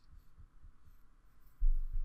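Faint steady background hiss, with a short low thump near the end.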